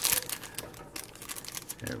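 Clear plastic seasoning sachet crinkling as fingers work at tearing it open, the crackling busiest in the first second.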